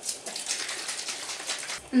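A plastic squeeze bottle of tie-dye being shaken hard, the water sloshing and splashing inside as it mixes with the dye powder.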